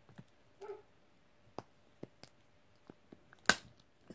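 Scattered faint clicks of a plastic toy wrapper being bitten and worked open with the teeth, with one sharp snap about three and a half seconds in.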